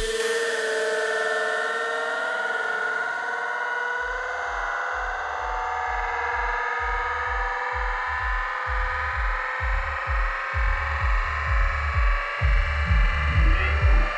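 Electronic dance music from a DJ set. The kick drum drops out for a stretch of held synthesizer chords, and a low, pulsing bass comes back about four seconds in and grows stronger toward the end.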